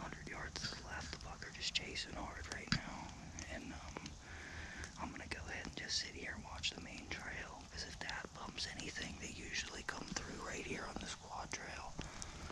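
A man whispering in short phrases, with scattered sharp clicks.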